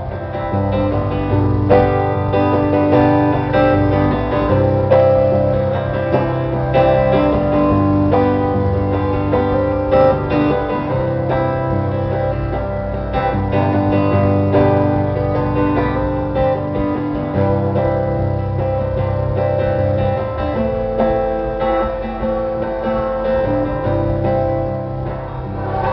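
Live instrumental passage on amplified acoustic guitar through a PA, with chords changing every couple of seconds and no singing.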